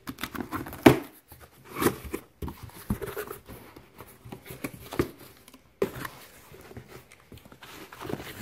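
A cardboard shipping box being opened and unpacked by hand: cardboard scraping, crinkling and knocking in irregular bursts, the loudest about a second in.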